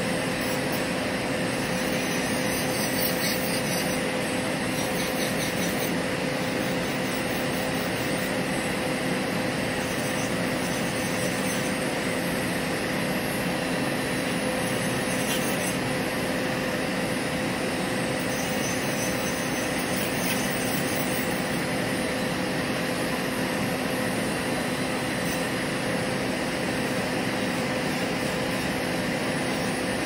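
Electric nail drill (e-file) with a sanding band running at a steady speed as it files down acrylic nails, a constant motor whine with the light grinding of the band on the acrylic.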